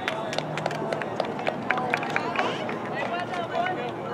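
Indistinct voices calling out across an outdoor soccer field, with scattered short sharp clicks.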